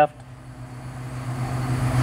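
A steady low hum with a soft, even hiss that starts faint and grows gradually louder over about two seconds.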